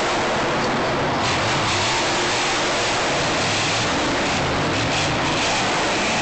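Monster truck engine running loud and steady in a stadium, heard from the stands as a dense, even wash of noise with a low engine drone underneath.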